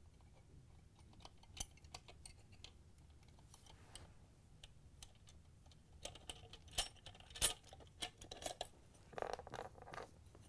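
Steel ice-crusher blades and washers clinking against each other and against the shaft as they are slid one by one onto a plastic ice dispenser auger: faint, scattered light clicks, busier from about six seconds in, the sharpest about seven and a half seconds in, then a brief scuffing near the end.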